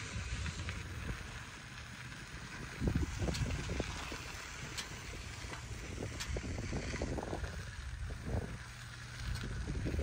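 Steady low rumble of a small open vehicle rolling slowly along a paved drive, with wind noise on the microphone and a few light knocks.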